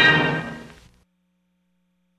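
A held orchestral chord ends the music and fades out within about a second, then silence.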